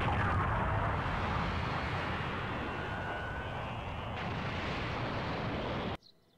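Cartoon sound effect of a long, rumbling rushing blast, like a gust from an explosion. It stops abruptly at a cut.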